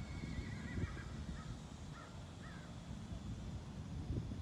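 A horse whinnying faintly: a high, wavering call that breaks into a few short rising-and-falling notes, ending about two and a half seconds in.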